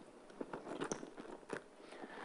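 A few faint, scattered clicks and small crackles over quiet room tone.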